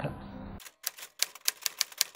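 Typewriter sound effect: a quick, irregular run of sharp key clacks that starts about half a second in, after a moment of faint room tone.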